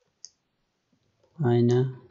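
A single light computer-keyboard keystroke click about a quarter second in, then a man's voice saying a word in the second half.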